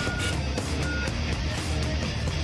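Loud title-sequence theme music with short, high electronic beeps.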